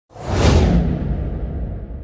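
Whoosh sound effect for an animated title intro: it swells quickly to a peak about half a second in, then fades away, its hiss dying off first and a low rumble lingering.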